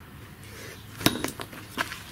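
Knocks and clicks of hand tools being handled and set down, with one sharp knock about a second in, over faint background hiss.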